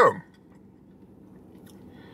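A man chewing a mouthful of cheesesteak, faint and quiet, with a few small mouth clicks over the low hum of a car cabin.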